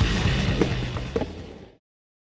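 Skateboard wheels rolling on a concrete bowl under music, with a couple of sharp knocks from the board. Everything fades out to silence about three quarters of the way through.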